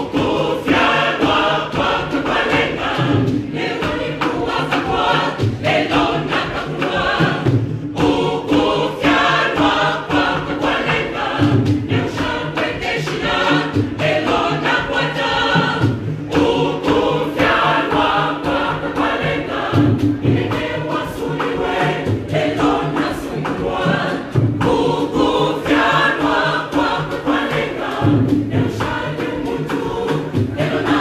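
Church choir singing a gospel song in full harmony, with a steady drum beat underneath.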